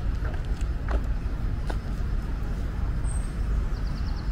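Steady low rumble of distant road traffic in an open city park, with a few faint ticks and a short high chirp about three seconds in.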